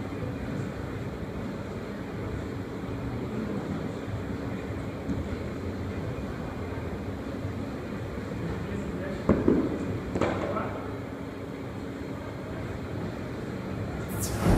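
Gym background with voices chattering. About nine seconds in come two heavy thuds about a second apart: a barbell loaded with bumper plates landing on the gym floor after a clean and jerk.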